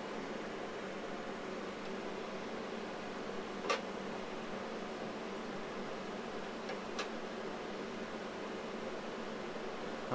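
Steady fan noise and hum from running electronic equipment, with two faint clicks, one a little under four seconds in and one about seven seconds in.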